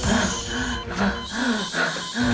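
A woman's repeated strained gasping moans, about two a second, each rising and falling in pitch, over a dramatic music score.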